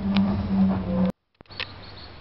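A steady electrical hum with a short click, cut off about a second in. After a brief gap comes faint outdoor background noise with one light knock.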